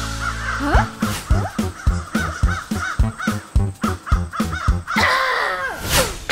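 Cartoon crows cawing again and again over background music with a steady beat, with a louder, harsher caw near the end.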